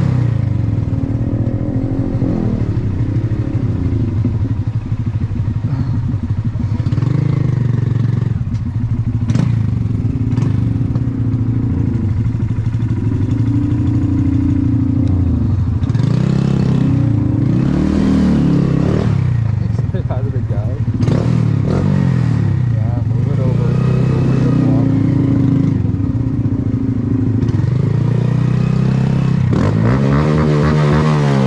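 Honda Grom's small single-cylinder four-stroke engine running at low speed, its pitch rising and falling again and again as the throttle is opened and closed in stop-and-go riding.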